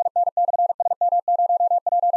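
Morse code sent at 45 words per minute: a single steady mid-pitched tone keyed on and off in rapid dits and dahs, sending one station's exchange in an amateur-radio SOTA contact.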